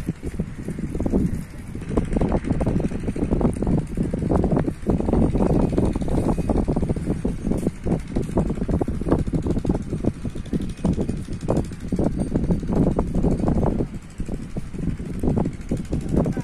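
Wind buffeting the microphone: a loud, uneven low rumble that rises and falls in gusts, with a brief lull about fourteen seconds in.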